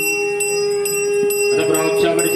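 A Hindu puja hand bell (ghanta) is rung steadily, about three strokes a second, during the naivedyam food offering. Under it, a priest's chanting voice holds one long note, then goes back to the chant's melody near the end.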